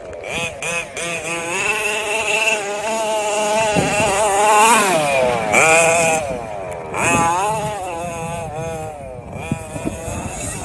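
HPI Baja 5B RC buggy's petrol two-stroke engine revving up and down repeatedly under throttle, dropping off twice and climbing again, loudest around the middle.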